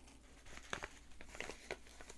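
Faint crinkling of a brown paper bag of dried herbs being handled, with a few soft crackles through the middle.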